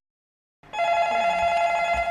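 A desk telephone ringing: one steady electronic ring about a second and a half long, starting about half a second in.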